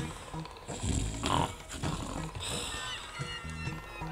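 A man snoring, a few drawn-out snores about a second apart, over soft background music.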